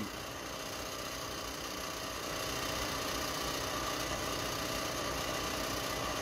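Steady mechanical hum of running laboratory equipment, a little louder from about two seconds in.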